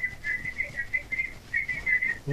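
A thin, high whistling tone on a phone-in call line, holding one pitch and breaking up into short pieces every fraction of a second: line interference or feedback on the telephone audio feed.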